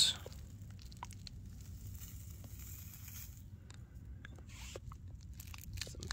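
Faint, scattered crunching and rustling of a handful of aged horse manure and wood-shavings mulch being handled.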